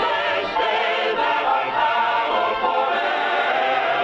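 Film score music: a choir singing long, held notes with a slight waver.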